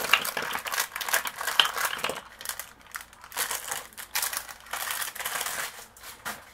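Clear plastic bag crinkling as it is handled and emptied, busiest in the first two seconds. Small plastic dropper bottles are tipped out of it, with light clicks as they land on a silicone mat.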